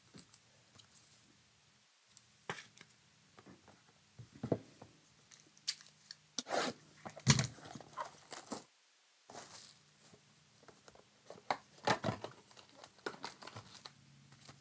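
A trading-card hobby box being torn open and its wrapping and foil packs handled: irregular tearing and crinkling rasps, loudest about seven seconds in.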